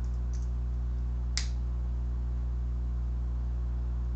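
A steady low electrical hum on the recording, with a couple of faint computer key taps near the start and one sharper single click about a second and a half in, as the typed code is submitted.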